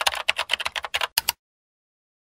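Typing sound effect: a rapid run of keyboard key clicks, about ten a second, as on-screen text is typed out letter by letter. The clicks stop a little over a second in.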